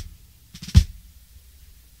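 Backing music between spoken lines: a single deep bass-drum hit about three-quarters of a second in, with little else sounding around it.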